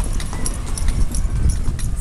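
A horse's hooves clip-clopping in a repeated rhythm as it pulls the ride along the road, over a steady low rumble.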